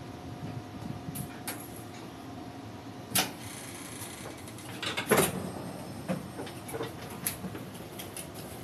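Passenger door of a Puyuma express train being opened by hand: small latch clicks, then a loud clunk about three seconds in as the door releases, followed by another burst of knocks and scattered clicks.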